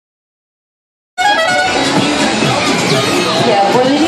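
About a second of silence, then the din of a busy fairground cuts in suddenly at full loudness: music playing over crowd chatter and voices.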